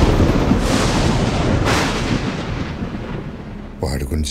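Thunder rumbling in two swells, about half a second and a second and a half in, then fading away.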